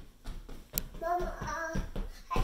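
A toddler singing a wordless, wavering note for about a second, starting about a second in. A sharp click comes just before it.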